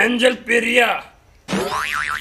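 A man's voice, then about one and a half seconds in a cartoon-style boing sound effect with a wobbling pitch.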